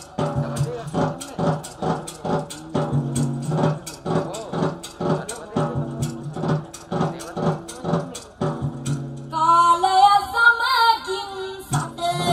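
A woman singing a song through a PA over music with a steady beat, ending on a long wavering note.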